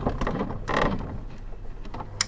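Short mechanical clip: clicks and a clattering, creaking stretch over a steady low hum, starting and stopping abruptly.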